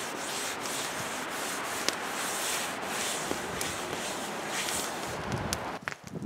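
A gloved hand rubbing oil around the inside of an old 19th-century cast iron Dutch oven: a steady scratchy scrubbing that swells and fades with each stroke, with a few small clicks, stopping near the end.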